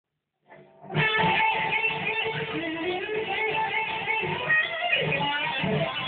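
Jackson Dinky electric guitar playing an improvised lead solo, a quick run of single notes that starts about a second in. Heard through a mobile phone's microphone.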